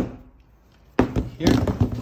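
A single sharp knock about a second in as a power cable with its plug is handled over a cardboard box.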